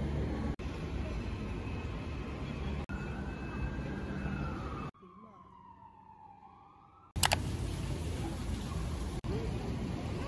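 Steady outdoor background rumble, broken by abrupt cuts, with a distant siren wailing in the middle: its pitch rises a little and then falls away. A sharp click comes about seven seconds in.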